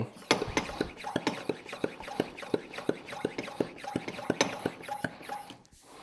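Hand pump of a Motive Products Power Bleeder pressure brake bleeder being worked in a quick run of short strokes, about four a second, building pressure in the tank toward 20 psi. The strokes stop shortly before the end.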